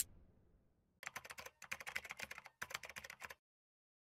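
Keyboard-typing sound effect: three quick runs of rapid clicks, starting about a second in and stopping shortly before the end, as text types onto an end-card graphic.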